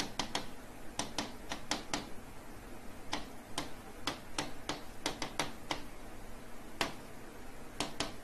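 Stylus tapping and clicking on the glass of an interactive touchscreen display while handwriting: sharp, irregular clicks in quick clusters, with short pauses between words.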